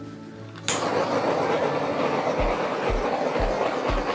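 A handheld torch ignites with a click less than a second in and then hisses steadily as it is played over wet acrylic pour paint. Background music with a beat about twice a second runs underneath.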